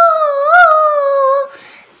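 A young girl singing one long held note unaccompanied, slowly falling in pitch and ending about a second and a half in, then a quick breath before the next phrase.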